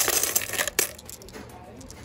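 Small polished tumbled stones clinking and rattling against one another as a hand scoops a handful from a bin of them. The clatter is densest for about the first second, ends with a sharp click, and then dies down.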